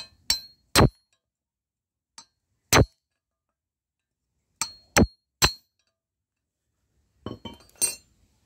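Sharp metallic clinks, about six spaced a second or two apart, as a rod-and-socket valve tool works on the valve spring retainer and keepers of a small air-cooled cylinder head during valve removal, then a brief light clatter of loose metal parts near the end.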